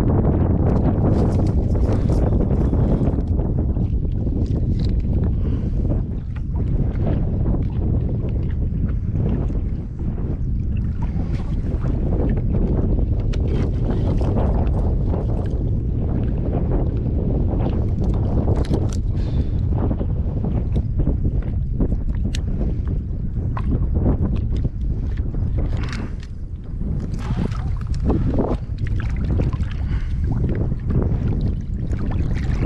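Strong wind buffeting the microphone as a steady low rumble, with scattered small clicks and knocks from handling a fish with pliers and a lip gripper over a kayak landing net.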